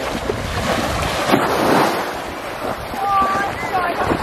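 Wind buffeting the microphone over the wash of small waves at the shoreline, with a brief voice near the end.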